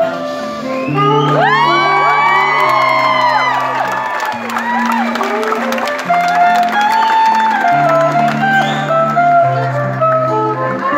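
Live pop band playing from the stage, with held bass notes moving in steps under a melody. Crowd whoops and cheers rise over the music from about a second in.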